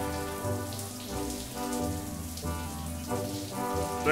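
Shower water spraying onto bodies and a tiled floor, over held orchestral chords that shift every half second or so.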